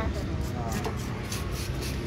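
A long knife sawing along a large marlin's skin with a quick, even scratching stroke, under voices talking and a steady low engine rumble.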